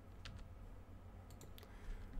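A few faint clicks from a computer keyboard and mouse, a pair about a quarter second in and a cluster near the end, over a low steady hum.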